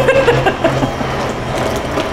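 Hand-held immersion blender running in a metal bowl, its motor humming steadily as the blades puree a soupy mixture.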